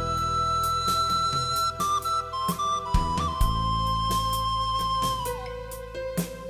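Wooden recorder playing a slow melody with long held notes: one long high note, a few quick shorter ones, then a long lower note that drops near the end. Underneath is a musical accompaniment with bass and a regular beat.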